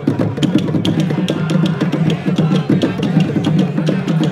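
Drumming in a steady, driving rhythm, with sharp strikes at about four a second over a dense low drum pattern.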